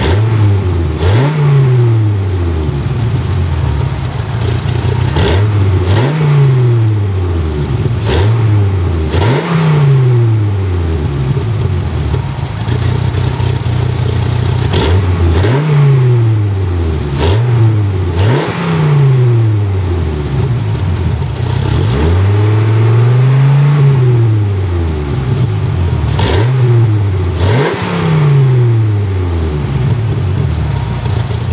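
Dodge Viper RT/10's 8.0-litre V10 revved repeatedly through its side-exit exhaust: quick throttle blips that rise and fall back to idle within about a second, about ten in all, with one longer held rev about three-quarters of the way through.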